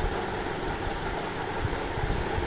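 Steady background noise between spoken lines: a low rumble with a faint hiss above it, and no distinct event.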